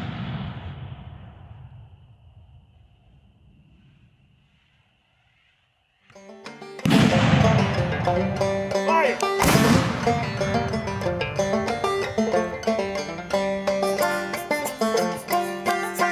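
The boom of a mortar shot fading away over the first few seconds, then near silence. From about six seconds in, plucked-string music on banjo and mandolin, with two heavy hits under it.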